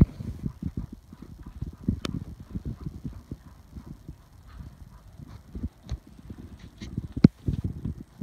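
Haflinger horse working her lips and mouth, making a run of short, irregular low mouth sounds with a few sharp clicks, one about two seconds in and a louder one near the end.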